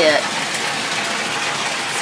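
Bathtub faucet running, water pouring steadily into the filling tub.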